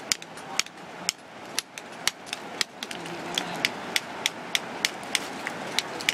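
Hammer striking a steel chisel to split layered rock for fossils: a run of sharp, metallic taps, about two to three a second.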